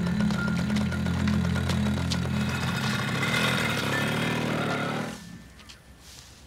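Small motorcycle engine running, its note shifting about halfway through; the sound cuts off suddenly about five seconds in.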